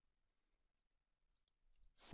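Near silence broken by a few faint, short clicks from a computer being operated: one a little under a second in and a couple more in the second half.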